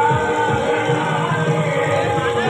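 Music with singing voices, continuous and at a steady level.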